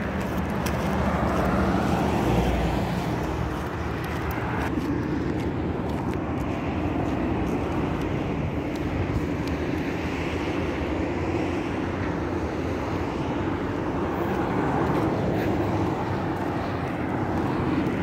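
Steady road traffic noise from cars on a city street, an even hum that swells and fades gently.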